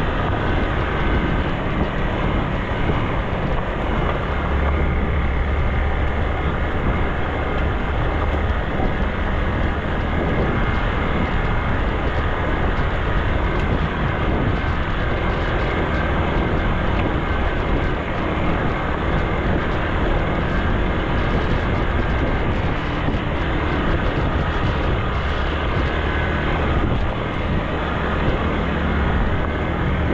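Motorcycle engine running at a steady cruise, mixed with wind rush and tyre noise on a gravel road.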